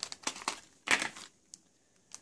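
Clear plastic packaging crinkling and clicking as a 2.5-inch SSD in its plastic bag is handled and lifted out of a plastic tray: short irregular rustles, the loudest about a second in.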